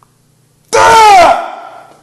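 A man's sudden, loud yell of effort, under a second long and falling in pitch, while straining to close a Captains of Crush #4 hand gripper.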